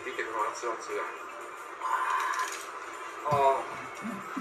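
Speech from a played video clip over light background music, with a short, louder vocal sound near the end.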